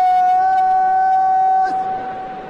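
A brass horn holds one long, steady note that cuts off shortly before the end and rings on briefly in an echo.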